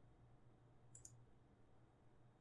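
Near silence with a faint steady low hum and one faint computer mouse click about a second in, as the fullscreen button is clicked.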